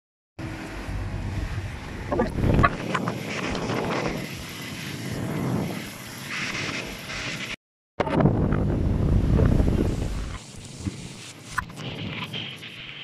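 Strong wind buffeting the phone's microphone: a loud, rumbling rush that swells and eases, dropping out to silence briefly at the start and again about two-thirds of the way through.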